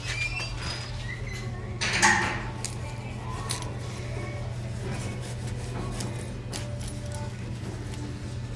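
Faint background music over a steady low hum, with small metallic clinks and handling noise as fingers work the metal zipper pull on a denim dress's chest pocket. There is a louder bump about two seconds in.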